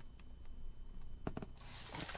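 Faint rubbing of paper as a picture book is held up and handled, with a couple of soft taps; the rubbing grows near the end as the book is moved.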